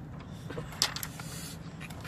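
Cardboard toy box being handled in the hands: a few sharp clicks and snaps, the loudest a little under a second in, over a steady low traffic hum.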